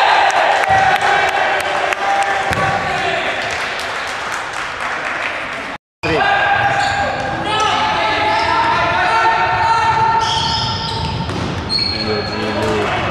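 Futsal game in an echoing sports hall: the ball is kicked and bounces on the hardwood floor while players and onlookers shout. The sound drops out for an instant near the middle at a cut in the recording.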